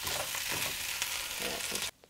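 Potatoes, broccoli and turkey meatballs sizzling in a frying pan as they are stirred with a spatula to heat through, with faint scraping of the spatula; the sound cuts off suddenly near the end.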